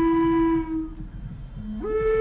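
Flute melody: one long held note that fades out about a second in, then after a short lull a new phrase begins near the end with a note sliding up in pitch.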